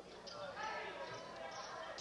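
Basketball dribbled on a hardwood gym floor, heard faintly under a general murmur of the crowd in a large gym.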